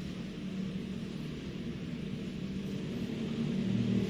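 Steady low background hum with an even hiss, unchanging throughout; no distinct event stands out.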